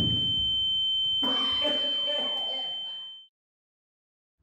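An electronic alarm sounding one continuous high-pitched tone over shouting voices, cut off suddenly about three seconds in.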